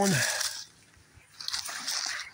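Rustling and crunching of dry brush, twigs and fallen leaves being pushed through by hand, in two short stretches, the second louder and coming about a second and a half in.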